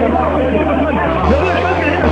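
Several men's voices talking over one another in agitated chatter, over a steady low hum.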